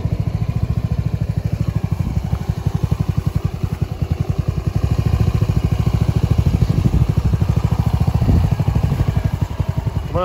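The Hammerhead GTS 150 go-kart's 149cc air-cooled single-cylinder four-stroke engine running at idle, a steady rapid pulse, a little louder around the middle.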